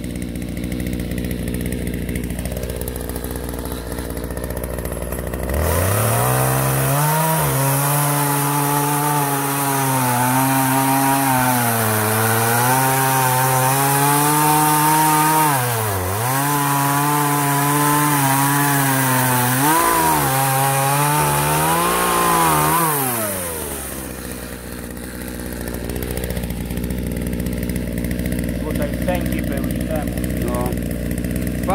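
Partner 351 two-stroke chainsaw idling, then opened up about five seconds in to cut through a log. Its engine pitch sags and recovers under load, with two brief dips, before it drops back to idle about seven seconds before the end. The chain is somewhat dull, so the cut goes slowly.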